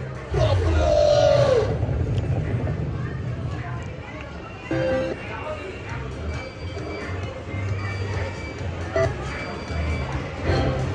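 Wonder 4 Super Free Games slot machine playing its spin music and jingles as the reels turn, with steady casino background chatter and other machines' sounds behind it.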